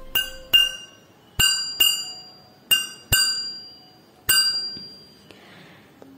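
Small hand cymbals (elathalam) struck in pairs, three pairs and then a single stroke, each giving a bright metallic clink that rings and fades, beating time to open a Margamkali dance.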